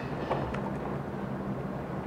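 Steady low hum of room background noise, with a few faint clicks of laptop keys as a line of code is deleted.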